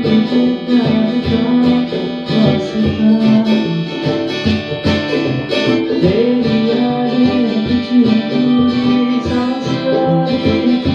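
Steel-string acoustic guitar being played, a continuous flow of picked notes and chords.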